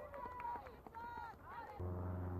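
Short, high-pitched shouts and calls from voices across an outdoor soccer field, with no clear words. Near the end a steady low hum cuts in suddenly.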